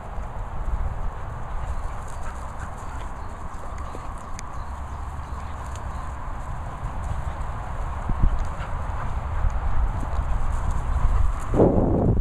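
Dogs running and playing on grass, their paws thudding on the turf, over a low rumble of wind on the microphone. The thuds grow louder and more irregular near the end as a dog gallops close by.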